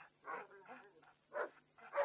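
Dogs barking, a few short separate barks, as search dogs are let loose to hunt down a man.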